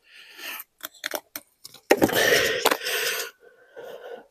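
Hands handling small items on a table: clear plastic packaging rustling and small objects clicking and knocking. The rustle is loudest from about two seconds in, with one sharp click in it.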